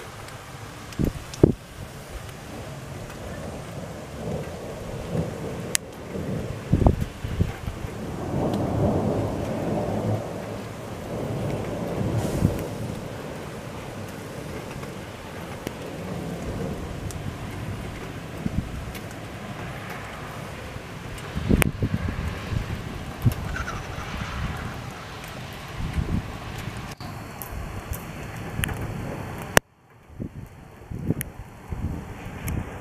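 Thunder rumbling in a summer thunderstorm, the longest and heaviest roll about eight to twelve seconds in, over a steady hiss of rain.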